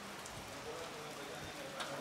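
Faint background voices over a steady hiss of noise, with a brief sharp sound near the end.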